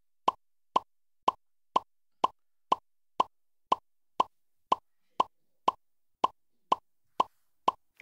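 Quiz-show letter-reveal sound effect: a steady run of short electronic blips, about two a second, one for each letter dropped into the puzzle board.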